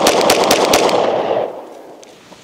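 The end of a rapid string of pistol shots, several a second, the last about a second in. The echo rings out and fades over the next half second or so.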